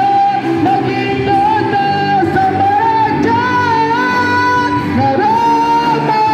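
Live rock band playing: a man singing long held notes over electric guitars, bass and drums.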